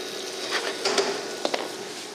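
Diced leeks, onion and garlic sweating in olive oil and butter in a frying pan, a soft steady sizzle, with a few light clicks and scrapes of the spatula against the pan.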